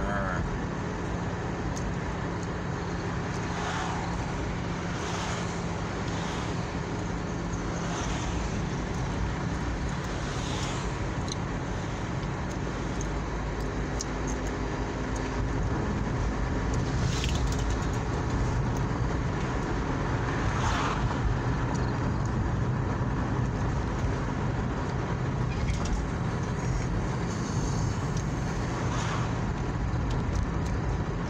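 Car cabin noise while driving: steady engine hum and road rumble, a little louder in the second half.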